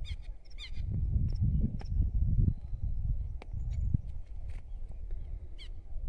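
Southern lapwings (quero-quero) calling: short, sharp, repeated cries, several in the first two seconds, then a few more spaced out, raised because the birds have seen a person close by. A low rumble on the microphone runs underneath.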